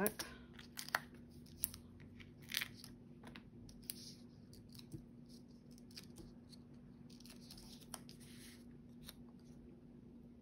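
Foam adhesive dimensionals being peeled off their backing sheet and pressed onto the back of a paper sentiment strip: faint scattered paper crinkles, ticks and short peeling rasps.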